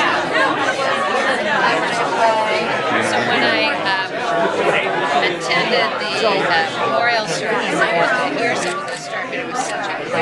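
Overlapping conversation: several people talking at once over the steady chatter of a crowd.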